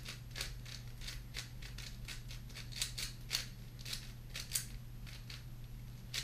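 Plastic 4x4 puzzle cube being turned quickly by hand: a fast, irregular run of sharp clicks and clacks, several a second, as the layers are turned and snap into place.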